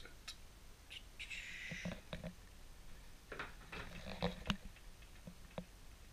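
Cardboard packaging and a paper leaflet being handled: a short rustle about a second in, then scattered clicks and taps as the box is picked up.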